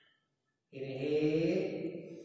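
A man chanting one long sustained tone on a single breath, starting under a second in and slowly fading away; the tail of a previous chanted tone dies out at the very start.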